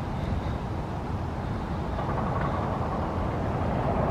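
Steady rumble of road traffic, swelling a little in the second half as a vehicle draws nearer.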